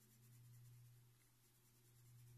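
Very faint strokes of a coloured pencil on paper, over a low steady hum.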